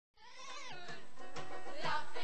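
Song from a stage musical fading in from silence: high singing voices with sliding notes over the show's accompaniment.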